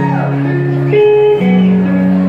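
Electric guitar played solo: sustained notes and chords that change about every half second, with one note sliding down near the start.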